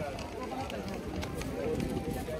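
Background voices of passers-by on a busy pedestrian market street, with a few light clicks mixed into the general street bustle.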